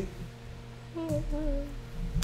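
A person's brief, soft laugh, voiced almost as a hum, about a second in.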